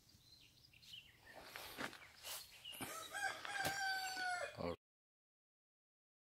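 A rooster crowing, ending in a long held note. The sound cuts off abruptly a little before the end.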